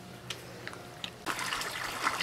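Water splashing and trickling into a garden pond, starting abruptly a little past halfway. Before that there is only a low steady hum and a few faint ticks.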